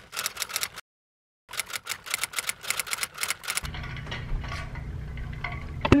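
Typewriter-style typing sound effect: rapid, evenly spaced key clicks, about eight a second, with a break of total silence about a second in. The clicks stop about three and a half seconds in, and a steady low hum carries on after them.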